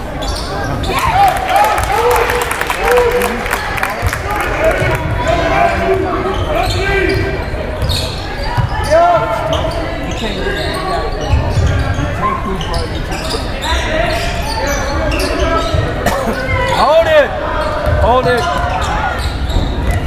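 A basketball bouncing on a hardwood gym floor during live play, with many quick knocks, mixed with shouting from players and spectators across a large gym.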